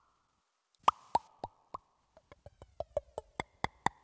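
Beatboxer making a string of pitched mouth pops and clicks into a microphone. Each pop drops in pitch. They come slowly at first, then quicken to about four a second in the second half, over a faint held tone.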